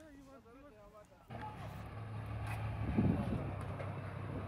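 Truck engine running with a low steady hum, cutting in suddenly about a second in and slowly growing louder, after faint voices at the start.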